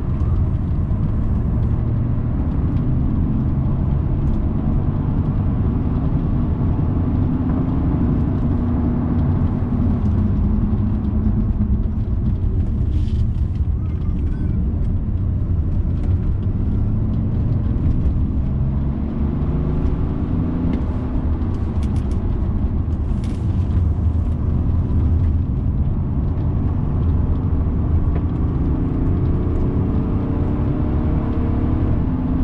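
BMW 330d Touring's three-litre straight-six diesel engine and road noise heard inside the cabin while it is driven hard on a race track. The engine note rises and falls through gear changes and corners, and it climbs steadily near the end under acceleration.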